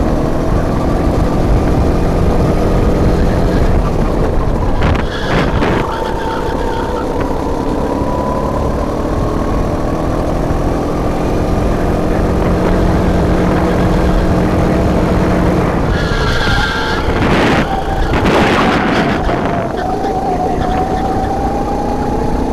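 Racing kart engine heard onboard at full throttle, its pitch climbing along the straights and falling twice as the kart slows for corners, about five seconds in and again about sixteen seconds in. A short tyre squeal and rushes of noise come at the second corner.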